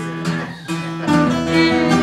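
Two acoustic guitars strumming a folk tune; about a second in the music gets louder and fuller as a fiddle joins with long bowed notes.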